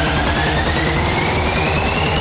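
Hardstyle build-up: a long synth sweep rising steadily in pitch over a dense wash of noise and fast pulsing bass.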